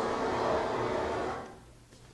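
Soundtrack of a documentary film clip: several sustained tones held together, fading out about a second and a half in and leaving faint room tone.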